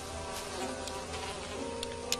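Flies buzzing steadily around a large pile of dung.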